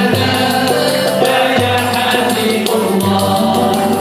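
Andalusian music ensemble playing live: singing over bowed strings and oud, with the cello holding low notes that change about once a second.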